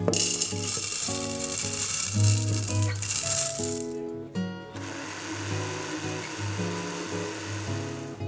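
Dry rolled oats poured from a bowl into a plastic blender cup, a rattling, hissing patter for about four seconds, over acoustic guitar music. After a short break a steadier, quieter hiss follows until the end.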